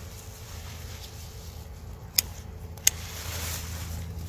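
Two sharp snaps about two seconds in, less than a second apart, as a hand works through sweet potato vines and soil, over a low steady rumble.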